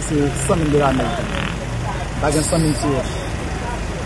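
Speech over a steady low vehicle engine rumble in the background.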